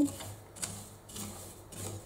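Wooden spoon stirring anise seeds as they dry-toast in a clay tajine: a soft, dry rustle and scrape of the seeds against the clay, with a light tick about halfway.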